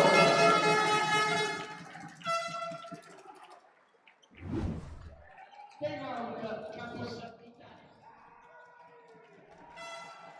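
A horn sounds with a steady tone for about a second and a half, then again briefly about two seconds in. A short dull thud follows a couple of seconds later.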